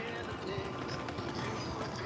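Irregular clatter of walking over brick paving, footsteps and a pulled wagon's wheels rattling on the pavers, with faint voices in the background.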